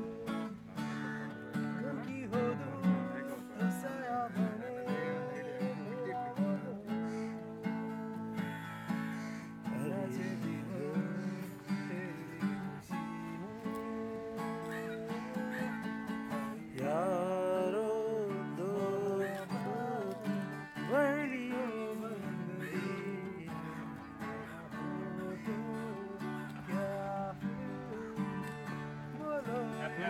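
Acoustic guitar strummed in a steady chordal rhythm, with a man's voice singing along over it.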